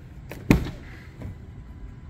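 Front door latch of a Ford Bronco Raptor clunking once as the door is pulled open, with a little handling rustle before and after.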